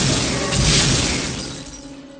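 A sudden blast with glass shattering and debris, loud at first and fading away over about two seconds.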